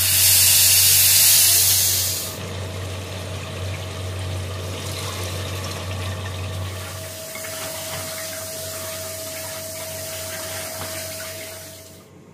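Pressure cooker releasing steam as its weight valve is lifted with a spoon: a loud hiss for about two seconds, then a softer steady hiss that continues until it drops away near the end.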